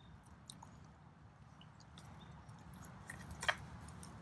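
A cougar licking and chewing a treat off the end of a wooden feeding stick: faint wet mouth and chewing sounds with scattered small clicks. There is one sharper click about three and a half seconds in.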